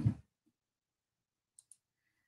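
The end of a woman's word, then near silence broken by two faint, quick clicks about a second and a half in.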